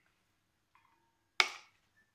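A faint short ring, then one sharp hard clack about one and a half seconds in: wet plastic clothes pegs being gathered from a glass bowl of water into a plastic cup.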